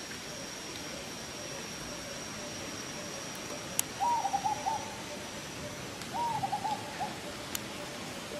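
An animal giving two short hooting calls, each a quick run of four or five notes, about two seconds apart.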